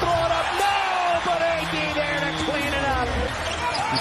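Live basketball arena sound: voices and crowd noise, with a basketball bouncing on the hardwood court.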